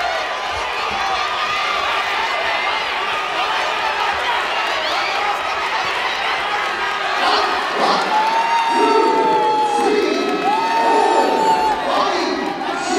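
Fight crowd cheering and shouting, a dense mass of overlapping voices throughout. From about eight seconds in, long drawn-out shouts stand out above the crowd.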